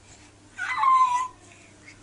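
A toddler's short, high-pitched vocal sound, under a second long, starting about half a second in with a slightly falling pitch.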